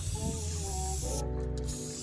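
An aerosol spray-paint can hissing, which cuts out about a second in, over a background music beat with heavy bass.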